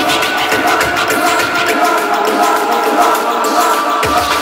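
Frenchcore hardcore track: a fast, regular kick drum beat under sustained high notes. The kick drops out about three seconds in, leaving the higher parts alone.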